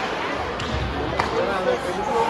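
Ice hockey arena ambience: spectators talking over the general din, with a single sharp knock just past a second in.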